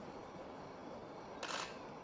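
A pause in speech filled with faint background hiss, broken by one short, soft hissing noise about one and a half seconds in.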